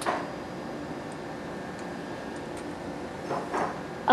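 A single sharp click as a spring-loaded disposable lancet fires into the side of a fingertip, followed by steady room hum.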